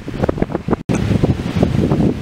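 Strong wind buffeting the microphone in irregular gusts, with waves washing on the shore beneath it; the sound cuts out for an instant a little under a second in.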